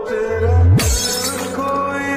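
Background music with an edited-in sound effect under a second in: a deep boom that falls in pitch, together with a brief crash like shattering.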